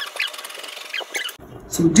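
Scissors cutting through brown pattern paper, heard as a run of short, high squeaky snips.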